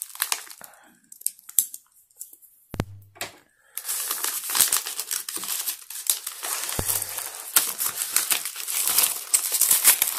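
A padded paper mailer is torn and pulled open by hand. A dull knock comes a little under three seconds in. From about four seconds on there is steady crinkling and tearing of paper.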